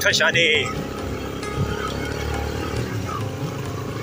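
Yamaha motorcycle engine running steadily under a low rumble of wind and road noise while riding a rocky dirt track. A brief burst of voice comes right at the start.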